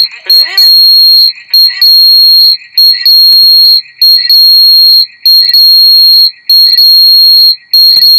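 Acoustic feedback squeal: a loud, steady high-pitched tone from a microphone picking up its own playback through a speaker, cut by brief dropouts every second or so. Echoed fragments of a voice come through it in the first two seconds.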